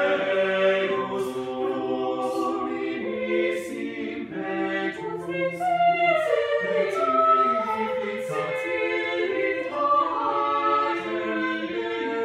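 Mixed chamber choir singing a cappella in several parts, sustained chords with the voices moving against each other, and sharp 's' consonants cutting through every second or so.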